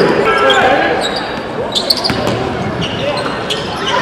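A basketball bouncing on a hardwood gym floor, a few sharp bounces with the strongest about two seconds in, under indistinct voices of players and spectators in a large echoing gym.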